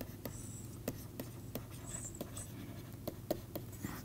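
Stylus writing on a pen tablet: faint, irregular light taps and scratches as words are handwritten, over a low steady hum.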